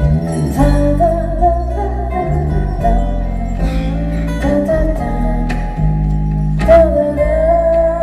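Live acoustic song: a woman singing a held, wavering melody over a low bass line, with a few ringing strikes from a rack of hanging chimes and small bells, the loudest near the end.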